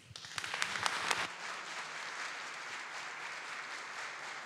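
Audience applauding: a few separate claps at first, quickly building into steady applause.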